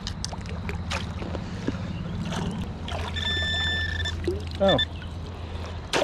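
Minelab Equinox 800 metal detector sounding a steady high beep about three seconds in, lasting about a second, with a short repeat a moment later: a signal on a metal target. Under it runs the steady low rush of flowing river water with scattered small splashes.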